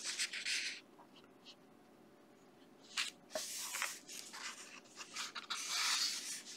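Paper pages of a coloring book being turned by hand, rustling: briefly at the start, then again from about three seconds in, building toward the end.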